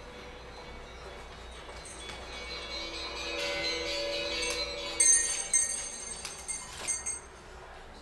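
Bells chiming: ringing tones swell up over a few seconds, then a run of sharp, bright strikes about five seconds in, the loudest moment, which die away before the end.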